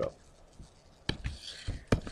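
Near silence for about a second, then a pen stylus on a tablet screen: two sharp taps under a second apart, with faint scratching between them.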